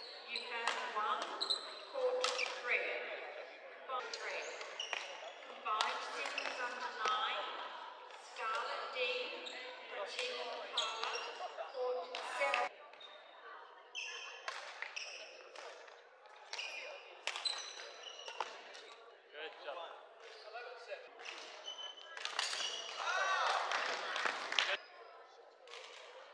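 Badminton rally in a large hall: racket strikes on the shuttlecock as sharp cracks every second or so, mixed with squeaking court shoes on the wooden floor and background voices.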